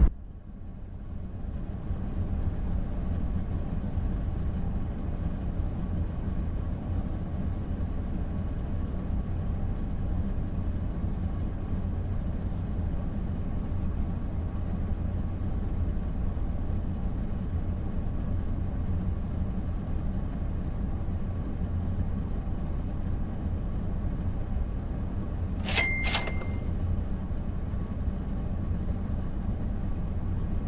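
A parked car's engine idling steadily, heard from inside the cabin as a low hum. A short, sharp double click near the end.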